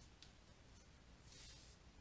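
Faint scratching of a stylus writing on a tablet: a short stroke near the start and a longer scratch a little after halfway, otherwise near silence.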